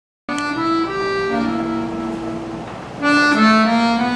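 Piano accordion playing an instrumental introduction: sustained reedy chords with the melody notes changing on top. The sound cuts in abruptly just after the start and swells louder about three seconds in.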